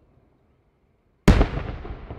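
An aerial firework shell bursting: one sudden loud boom a little over a second in, followed by a long echo that fades away.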